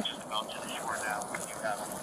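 Faint voices in the distance over a steady background hiss.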